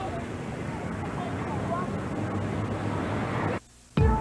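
Steady city street ambience: a low traffic rumble with faint, indistinct voices. It cuts out shortly before the end.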